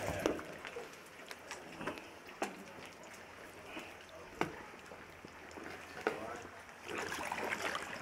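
Sea canoes moving on calm water: faint water sounds with single sharp clicks about two, four and six seconds in. Voices rise near the end.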